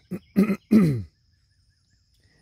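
A man clearing his throat: three short, throaty bursts in the first second, the last falling in pitch.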